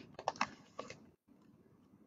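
Faint paper handling of a large picture book as a page is turned: a few short, soft clicks and rustles in the first second, then quiet.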